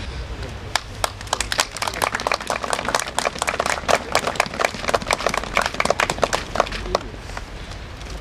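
Scattered applause from a small crowd, beginning about a second in and dying away near the end, over a low wind rumble.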